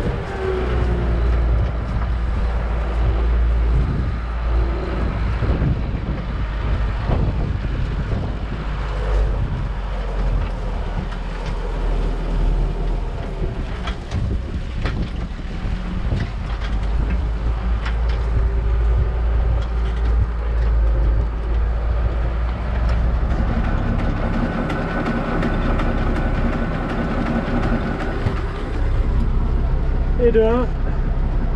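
Case IH 1455 tractor running steadily while pulling a trailed sprayer loaded with liquid fertiliser across a field, heard close to the sprayer's wheel as a deep continuous rumble with occasional knocks and rattles from the rig.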